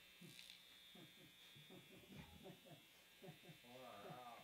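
Near silence: faint, indistinct voices talking, over a steady faint high-pitched electrical buzz.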